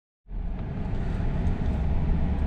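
Pickup truck running, heard from inside the cab: a steady low rumble that starts about a quarter second in.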